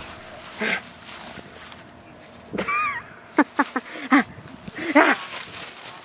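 A woman laughing in short bursts, with a brief high falling squeal near the middle, over rustling and handling noise from a handheld camera moving over grass.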